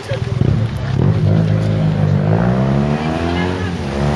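A car engine running with a steady low drone, its pitch rising from about two seconds in as it accelerates.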